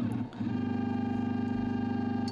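Stepper motors of a 3D printer converted into a pick-and-place machine whine at one steady pitch as the head makes its homing move. After a brief dip, the steady whine sets in about half a second in.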